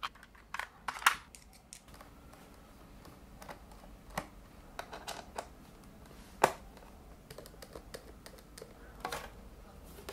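Small plastic and metal clicks: a screwdriver taken from a plastic bit case, then a precision screwdriver undoing the bottom-case screws of a 2012 MacBook Pro, with a few sharp ticks spaced a couple of seconds apart.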